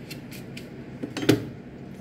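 A few faint light rustles or clicks, then about a second in a single sharp knock with a short ring: a kitchen knife set down on a plastic cutting board while a foil-wrapped block of butter is handled.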